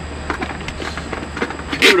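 A few faint plastic clicks and knocks as the halves of a Watermelon Smash toy watermelon are fitted back together, over a steady low hum. A man's voice starts near the end.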